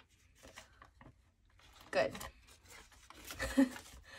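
Paper banknotes rustling faintly as they are handled and tucked into a clear plastic cash holder, in soft scattered strokes.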